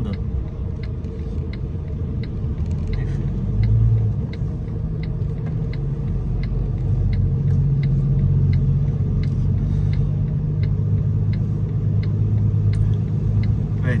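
Truck diesel engine running under load, heard inside the cab, its note growing stronger from about seven seconds in as the truck pulls away out of the roundabout. The turn-signal indicator ticks steadily about twice a second, and there is a brief low bump about four seconds in.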